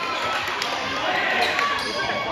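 A basketball dribbled on a hardwood gym floor, with players and spectators shouting and talking over it.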